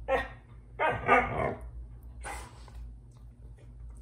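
Husky vocalising, the chatty 'talking' of the breed: a short call at the start, then a louder call of under a second that wavers up and down in pitch, then softer sounds.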